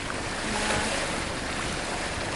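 Steady wind noise on the microphone over open water, with the wash of water beneath it.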